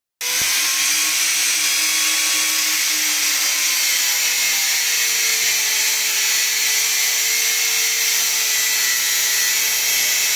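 Handheld angle grinder with a thin cutting disc cutting through a stainless steel railing pipe: a steady, loud, high-pitched grinding hiss with the motor's whine underneath.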